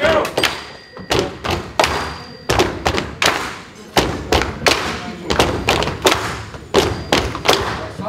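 Wooden crutches and walking sticks knocked on a wooden floor in a percussive routine: a series of sharp thumps, about three a second, somewhat uneven.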